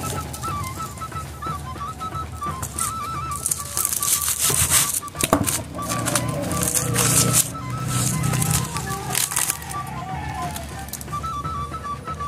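Background music with a high melody line of short stepped notes, and some crinkling as the leaf-wrapped fish parcel is handled and opened.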